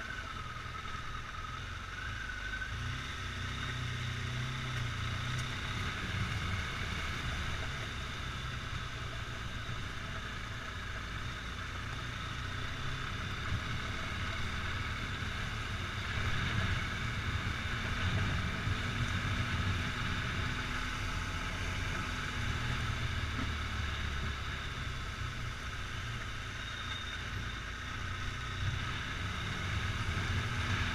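Motorcycle engine running steadily at low speed, a continuous low rumble picked up by a camera mounted on the bike.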